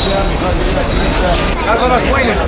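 Tram wheels squealing on the rails in a steady high tone over busy street noise; the squeal stops about three-quarters of the way through and crowd voices come up.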